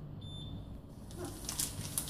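A short electronic beep from a Hilti PS 1000 X-Scan hand-held concrete scanner, lasting about half a second, over a low steady hum.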